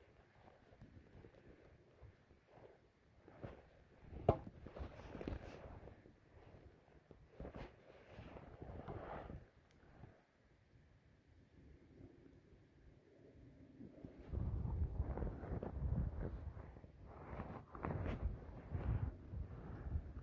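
One sharp crack about four seconds in: a toy bat hitting a plastic ball. Around it are outdoor wind rumble on the microphone and soft knocks and rustles, the wind rumble louder in the last few seconds.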